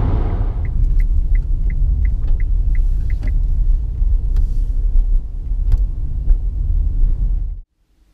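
Steady low road and tyre rumble inside a moving Nissan Leaf's cabin, with no engine note. About nine short high ticks, roughly three a second, sound near the start, and the rumble cuts off suddenly near the end.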